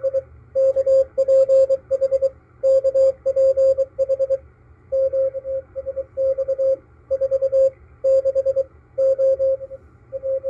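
Morse code (CW) from coast station KPH received on an SDR receiver: a single steady beep tone keyed on and off, sending its call sign "DE KPH KPH KPH" and a QSX announcement of the frequencies it is listening on, with faint static underneath.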